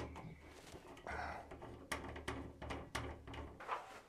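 Faint clicks and small knocks of metal parts being handled as the knurled adjuster is put back onto a greenhouse autovent's opener arm, the last step in resetting a disengaged autovent, with a low intermittent rumble beneath.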